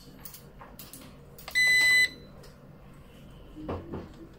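A single electronic beep, about half a second long, from a folding drone's remote controller as a button on it is pressed. A few light clicks come before it and a short knock near the end.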